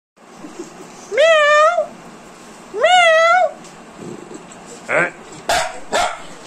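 A muzzled small white spitz-type dog gives two long, high-pitched cries about a second and a half apart. Each rises at the start and is then held with a wavering pitch. Shorter, sharper sounds follow near the end.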